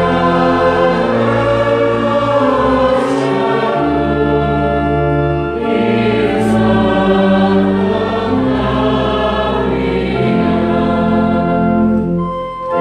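Mixed-voice choir singing a Croatian carol in slow, held chords.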